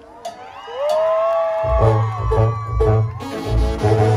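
Live banda sinaloense music: after a brief lull, a voice holds one long high note, then about two seconds in the full band comes back in with a pulsing tuba bass line and brass chords.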